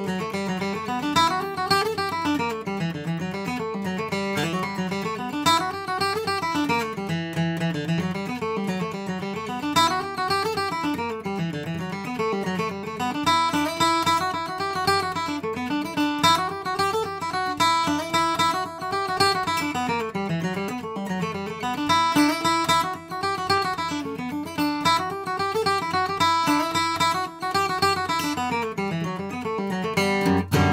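Handmade Strickland dreadnought acoustic guitar with a red spruce top and Indian rosewood back and sides, played solo: a picked tune over a bass line that walks up and down in repeating phrases, with the deep low-end rumble of a dreadnought.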